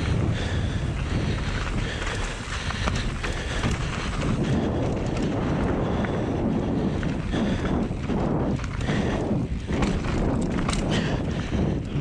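Wind rushing over the camera microphone and a mountain bike's knobby tyres rolling fast over dry dirt on a downhill run, with short knocks and rattles from the bike over bumps, mostly in the second half.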